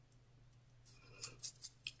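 Fingers rubbing and pressing a synthetic lace-front wig at the hairline: a few faint, short rustling scratches starting about halfway through.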